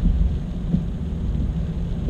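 Steady low rumble of road and engine noise inside a moving car's cabin on a wet road, with a faint hiss of tyres and rain above it.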